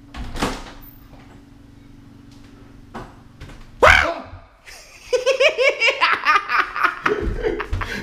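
A sudden loud yell from a jump scare just before the middle, followed by a man laughing hard and breathlessly for the rest of the time. A faint steady hum runs underneath before the yell.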